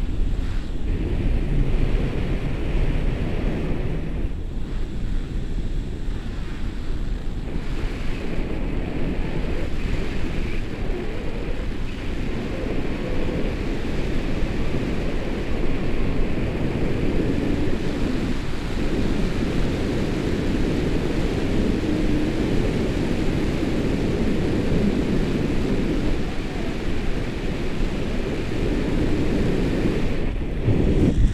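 Steady low rumble of wind buffeting an action camera's microphone, from the airflow of a paraglider in flight.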